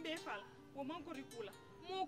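A woman talking animatedly in a local language, over steady background music.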